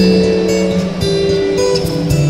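Guitar playing an instrumental melody, a run of plucked notes that each ring on before the next.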